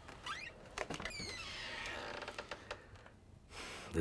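A door creaking on its hinges in a few short squeaks, with a few light knocks.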